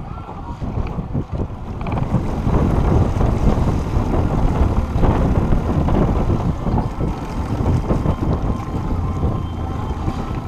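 Wind buffeting the microphone on an open boat over choppy water, a loud irregular rumble that grows stronger about two seconds in.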